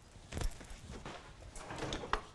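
Faint kitchen handling noises: a soft knock about half a second in, light rustling, and a short click near the end.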